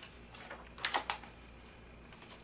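A page of a paper picture book being turned and handled: a few faint rustles, then a quick cluster of three or four crisp clicks about a second in.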